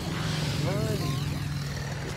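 Road traffic: a vehicle engine running with a steady low hum, with a faint voice briefly under it about half a second in.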